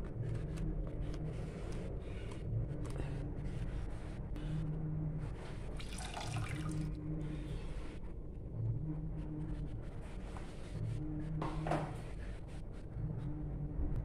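Ube-flavored condensed milk poured from a pouch into a wok of coconut cream, a liquid pouring sound over a steady low hum that comes and goes.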